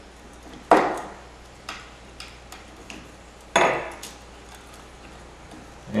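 Handling noise from hands working a plastic zip tie and thin wires on a rod: two louder scuffs, under a second in and past three and a half seconds, with a few faint clicks between.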